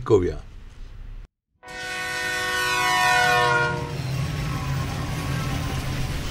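Train horn sounding one long blast about two seconds in, held for about two seconds, then the train's steady low rumble as it runs.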